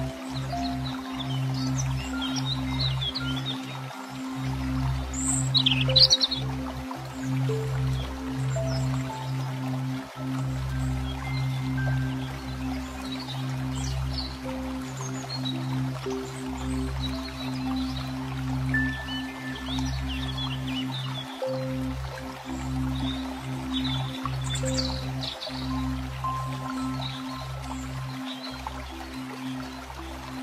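Calm new-age background music: a sustained low drone with slow single notes above it, and bird chirps mixed in now and then.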